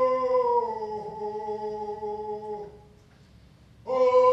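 A single voice chanting a long, steady held note that sinks a little in pitch about a second in and stops a little before three seconds. After a brief pause, a new held note starts just before the end.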